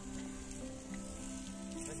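Background music of long held notes that change every half second or so, over a steady hiss.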